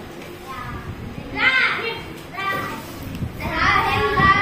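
Young children's voices: short high calls and chatter, growing louder and busier near the end.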